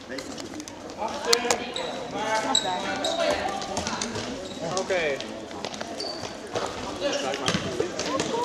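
Korfball being played on a sports-hall floor: the ball bouncing and a few sharp ball impacts, with indistinct calls from the players.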